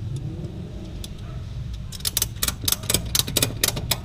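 Tie-down strap being ratcheted tight over an ATV tyre: a quick run of sharp ratchet clicks in the second half, about six a second, over a low steady rumble.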